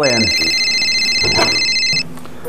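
A mobile phone ringing: an electronic ring of several steady high tones, stopping abruptly at the end.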